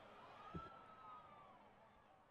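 Near silence, with one faint tone that rises and then falls over about a second and a half.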